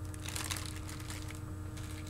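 Clear plastic shrink-wrap on a plastic paint palette crinkling as the palette is handled, a run of small crackles that is densest in the first second.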